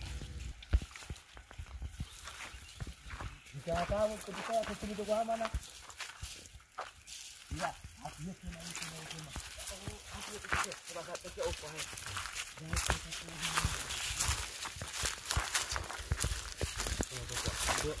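People walking through dry bush: footsteps and brushing against dry twigs and grass make scattered light crackles and snaps. Low voices speak quietly now and then.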